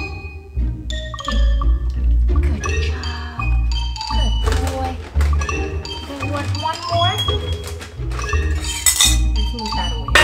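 Background music: a bright tune with marimba-like mallet notes over a steady pulsing bass beat.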